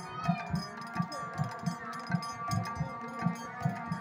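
Devotional kirtan music: khol drums, two-headed barrel drums, beating a steady rhythm of about three strokes a second over a harmonium's held notes.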